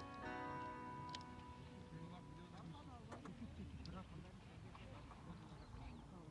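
Background guitar music ending, its last held notes dying away over the first couple of seconds, then faint, indistinct voices of people talking, with a few light clicks.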